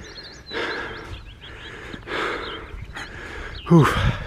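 A man breathing hard in noisy puffs while small birds chirp faintly in the background, then a short voiced 'ooh' near the end.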